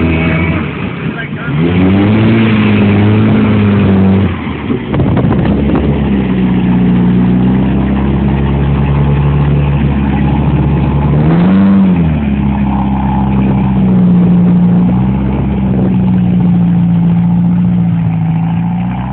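Jeep Wrangler engine pulling through deep mud and water. It revs up about two seconds in and again near the twelve-second mark, and holds a steady drone in between.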